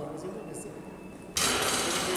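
Quiet gymnasium ambience as a free throw is shot. About a second and a half in, it jumps suddenly to a steady, louder hiss.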